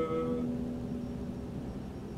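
Acoustic guitar chord ringing out and fading, its higher notes dying within half a second and a low note holding on a little longer before it too fades.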